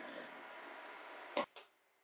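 A pointed hand tool scraping steadily across sheet lining material for about a second and a half, ending in a sharp knock on the wooden workbench, then a lighter tap.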